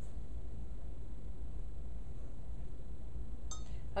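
Hands mixing pizza dough in a glass mixing bowl, over a steady low hum, with one brief light clink against the glass near the end.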